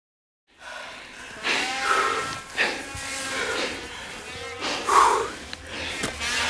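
Snowmobile engines revving with a high, buzzing whine that rises and falls, starting after about half a second of silence and peaking about two and five seconds in.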